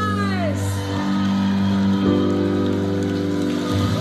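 A woman's held sung note that falls away about half a second in, over sustained piano chords that change about two seconds in and again near the end.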